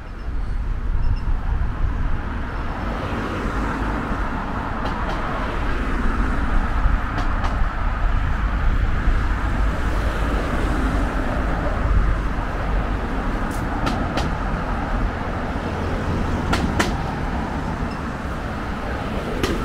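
Road traffic on a town street: cars passing, a continuous rumble of engines and tyres on the road, with a few brief clicks.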